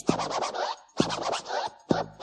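DJ turntable scratching, in quick back-and-forth strokes, over an electro / Miami bass drum-machine beat with a deep kick about once a second.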